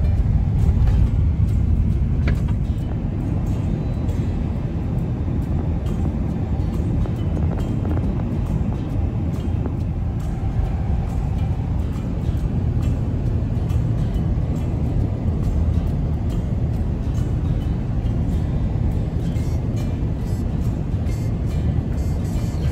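Steady low rumble of tyre and engine noise heard from inside a moving car's cabin.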